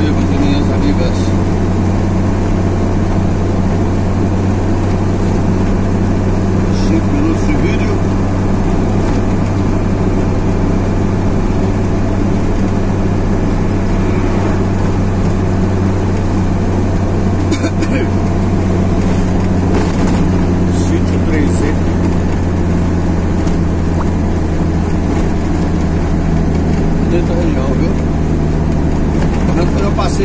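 Steady engine drone and road noise inside a vehicle's cab while it cruises at an even speed.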